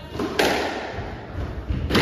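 A squash ball being struck by rackets and hitting the court walls during a rally: two loud, sharp cracks about a second and a half apart, with a lighter knock just before the first. Each crack rings briefly in the court.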